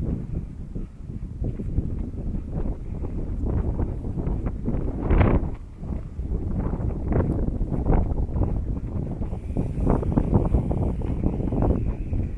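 Wind buffeting the microphone in uneven gusts, a loud low rushing noise with the strongest gust about five seconds in.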